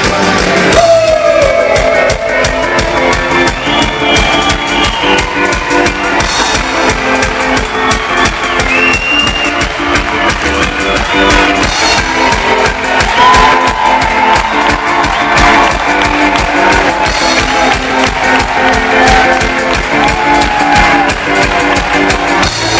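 Live rock band playing loud, with electric guitar and a steady drum beat, heard from within the crowd.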